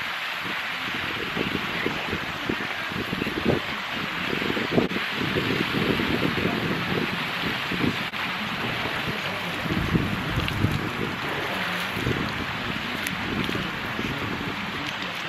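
Steady, rain-like splashing of water falling from a swimming pool's mushroom fountain, with gusty wind on the microphone.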